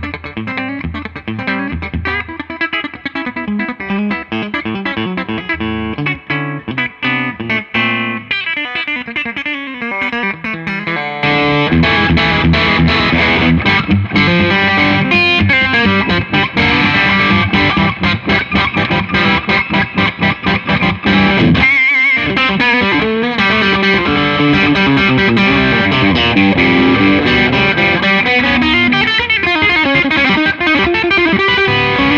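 Gretsch White Falcon hollowbody electric guitar, its TV Jones T-Armond single-coil bridge pickup played through an amp with some distortion, picking single-note lines and chords. About eleven seconds in the sound jumps louder and brighter, with a short break near the middle.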